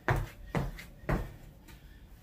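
Sneakered feet landing on a concrete floor during an agility-ladder footwork drill: three thuds about half a second apart in the first second, then quieter steps.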